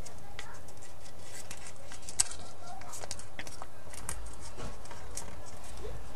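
Paper being folded and handled for an origami swan: scattered light crinkles and taps, with one sharper click about two seconds in.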